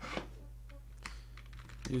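Computer keyboard being typed on, a few separate keystrokes, over a steady low hum.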